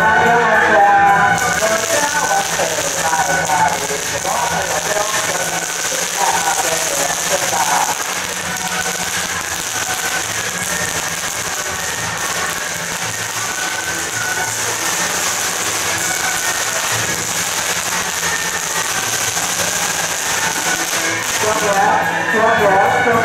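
A long string of firecrackers crackling continuously, starting about a second in and dying away just before the end. Procession music is heard at the start and returns at the end.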